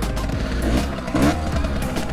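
Yamaha YSR50's small two-stroke single-cylinder engine idling steadily right after starting on the first kick, with music playing over it.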